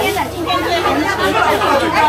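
Market chatter: several people talking at once, the words not clear, over a low steady hum.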